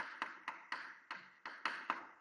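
Chalk on a blackboard during handwriting: a quick, irregular series of about nine sharp taps, each with a short scrape, as the strokes of the letters are written.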